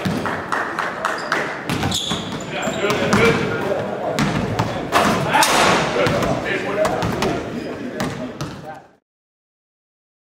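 Basketball bouncing and hitting the hardwood gym floor in a run of sharp thuds during dribbling drills, with voices calling out over it; the sound stops abruptly about nine seconds in.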